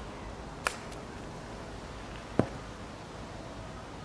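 Golf iron striking the ball on a short pitch shot: a single crisp click about half a second in. About two seconds later comes a second, sharper knock, over a steady low background noise.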